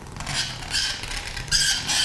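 A fork played as a found-object instrument, giving a high, scratchy squeak that gets louder about a second and a half in.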